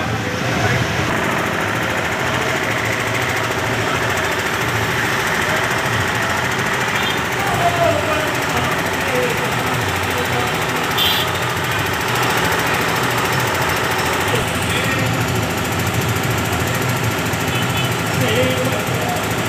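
A diesel engine running steadily, such as a tractor pulling a procession float, with people's voices mixed in.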